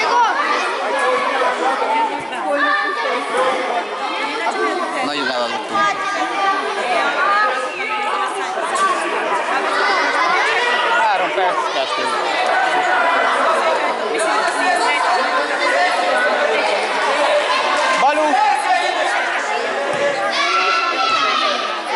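Many voices chattering and calling at once, overlapping into a steady babble that echoes around a large indoor sports hall.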